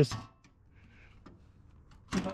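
A spoken word ends, followed by near silence: faint room tone with a faint click or two.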